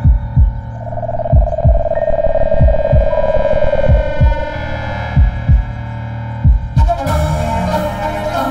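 Film soundtrack with a heartbeat effect of paired low thumps, about six double beats a little over a second apart, over a steady low drone and a held higher tone. Near the end a fuller music passage comes in.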